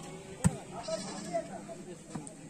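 A single sharp smack of a volleyball being struck about half a second in, followed by faint calls from players and onlookers.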